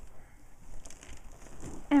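Quiet rustling and crinkling of gift-wrap paper and a ribbon bow as a baby's hands pick at a wrapped present. A woman's voice begins at the very end.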